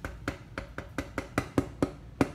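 Quick run of light, hard taps, about five a second and getting louder toward the end: a wooden-handled hand instrument tapping on a dental articulator.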